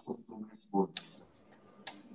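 A man's quiet, trailing speech over a video call in the first second, then two sharp clicks, one about a second in and one near the end.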